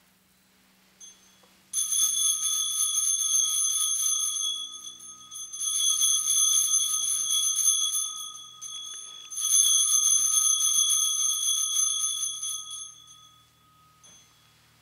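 Altar bells rung three times, each a ringing spell of about three seconds with short gaps between, marking the elevation of the chalice after the consecration.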